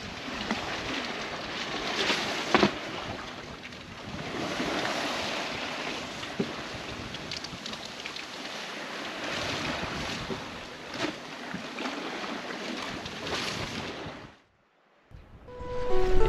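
Water rushing and splashing along the hull of an Alberg 30 sailboat running under spinnaker, in uneven surges, with wind gusting over the microphone. The sound cuts out briefly near the end.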